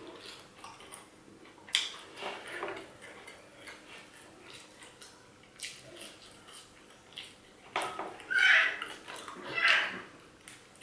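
A seven-month-old baby screaming in the background, two high-pitched cries near the end.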